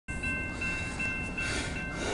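CSX mixed freight train rolling past a grade crossing: a steady rumbling noise with thin, steady high-pitched tones ringing above it.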